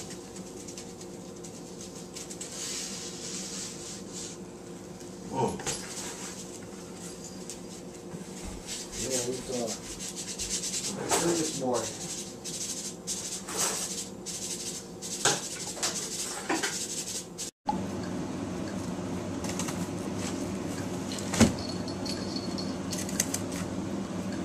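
Foam packing peanuts rustling and clicking as a hand stirs them in a cardboard box, over a steady low hum. A few short voiced sounds come in about halfway through.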